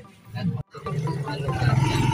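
Motorcycle engine of a sidecar tricycle revving as it pulls away, a low rumble that grows louder from about a second in.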